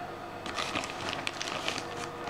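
Plastic bag of salt crinkling as it is handled: a run of small crackles and rustles starting about half a second in.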